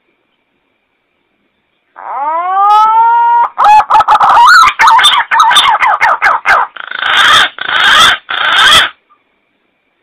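Green pigeon (punai) call played as a hunting lure, loud: after about two seconds of silence, a rising whistled note, then a quick run of wavering whistles, then three harsher, noisier notes that stop about nine seconds in.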